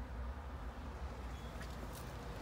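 Low, steady background rumble with a faint short click or two near the end.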